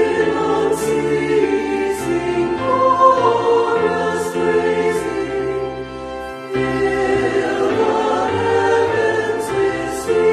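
A choir singing a hymn in slow, held notes. There is a brief lull between phrases about six seconds in.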